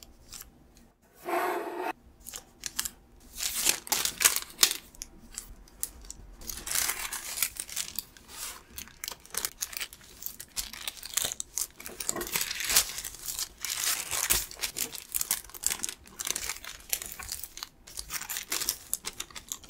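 A sheet of baking paper being folded and creased by hand on a wooden table: irregular crinkling and rustling of the paper as the folds are pressed and smoothed down.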